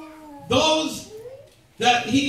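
A man's amplified voice speaking in short bursts: a drawn-out sound falling in pitch at the start, then a loud exclamation, a brief pause, and speech resuming near the end.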